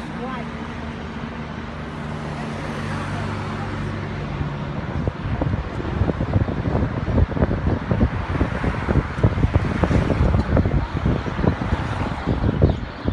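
Car cabin sound while driving: the engine's low hum with road noise, its pitch rising about two seconds in. From about five seconds in, gusty wind buffeting the microphone grows louder and covers it.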